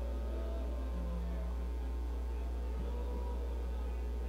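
A steady low electrical hum in the recording, with only faint, indistinct sounds from the room beneath it.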